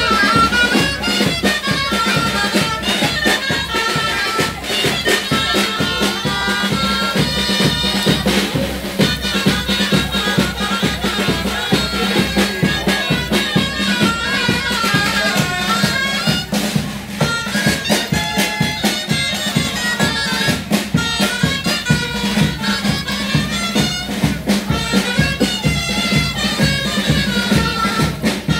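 Traditional folk music on bagpipes: a piped melody over a constant drone, with a regular drum beat.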